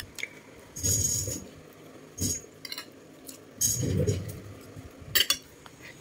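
Metal fork clinking and scraping on a plate while eating, a handful of separate strokes spread over several seconds.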